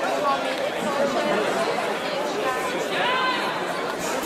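Indistinct chatter of many people talking at once in a large sports hall, with no single voice standing out.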